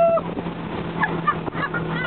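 A long held shout ends abruptly just after the start. Then a motorboat engine drones steadily under the hiss of churning wake and spray, with a few brief yelps about a second in and near the end.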